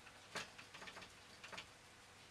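Faint dabbing of a paintbrush on watercolour paper: a few soft ticks, the clearest about a third of a second in, over quiet room tone.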